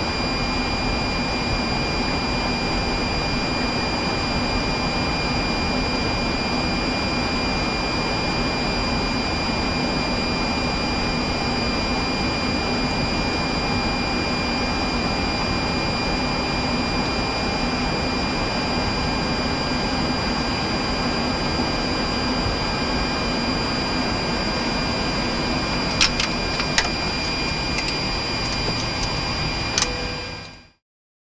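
Steady flight-deck noise of a Boeing 737-700 taxiing in with its jet engines at idle: an even rush with two faint, steady high whines. Two short clicks come near the end.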